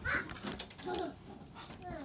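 Quiet handling noises of foil trading-card packs and a cardboard box being moved: scattered soft clicks and rustles, with a short noisy rustle near the start and a brief faint voice about a second in.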